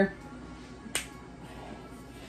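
A single sharp click about halfway through: the plastic flip-top cap of a seasoning shaker snapped open.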